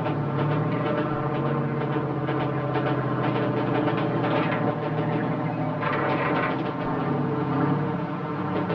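River assault boat engines running with a steady drone as the boat moves upriver and puts troops ashore.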